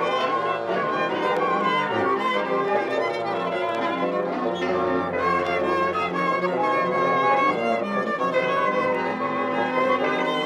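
Music led by bowed strings, with violin most prominent, in dense overlapping sustained notes.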